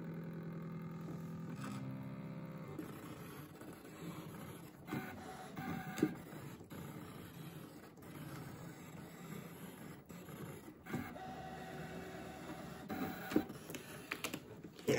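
Brother ScanNCut cutting machine running a cut: its motors whir in runs that shift in pitch as the cutting head and mat move, with a few light clicks.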